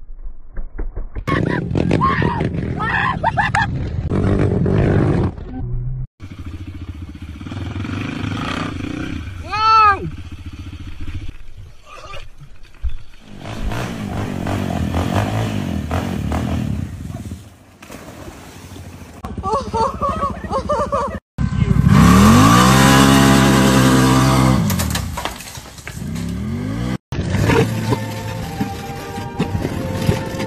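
Quad bike (ATV) engines revving across several short clips, one long rev rising and falling about two thirds of the way through, mixed with people's voices. The sound breaks off sharply between clips.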